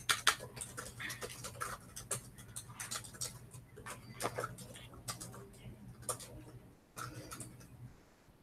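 Typing on laptop keyboards: quick, irregular key clicks from two people, over a steady low hum.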